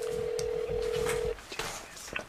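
Telephone ringback tone heard over the line: one steady electronic tone lasting about a second and a half, the called number ringing before anyone picks up.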